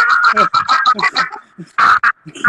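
A man's voice in rapid, shrill bursts, about eight a second, fading off partway through, then one loud, longer cry near the end.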